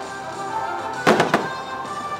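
Fireworks bursting: three sharp bangs in quick succession about a second in, over steadily playing show music.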